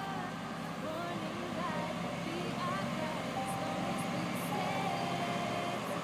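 Farm tractor engine running steadily, with faint voices over it.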